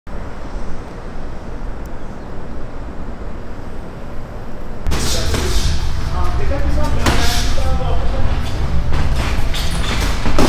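A steady low rumble, then about five seconds in a louder stretch of indistinct voices over a deep bass, with a few sharp knocks.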